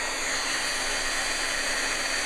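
Craft embossing heat gun running steadily, its fan blowing hot air to melt the embossing medium on a small brooch piece.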